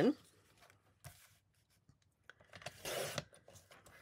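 Fiskars paper trimmer's sliding blade run along its rail through patterned scrapbook paper: one short scraping swish about three seconds in, after a faint rustle of paper about a second in.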